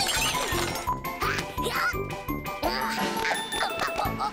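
Upbeat cartoon music with a steady beat, with short high-pitched squeaky vocal sounds from a cartoon bunny character over it.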